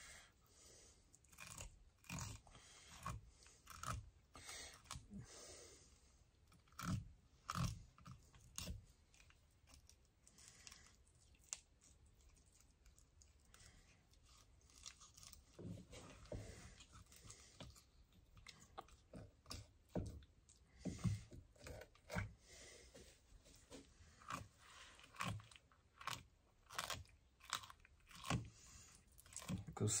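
Small fish knife cutting a bream fillet on a wooden bench top: faint, irregular short cutting and scraping sounds, quieter for a few seconds in the middle.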